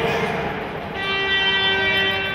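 A steady horn-like tone starting about a second in and held without change of pitch, over the noise of a crowd in a large hall.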